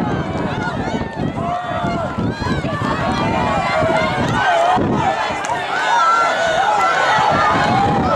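Track-meet spectators shouting and cheering runners on, many voices overlapping at once.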